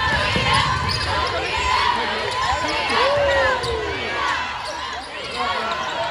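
Basketball dribbled on a hardwood court during live play, with players' sneakers squeaking in a large gym and voices in the background.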